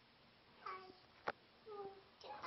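Two short high-pitched vocal calls, one about half a second in and one near the end, with a single sharp click between them that is the loudest sound.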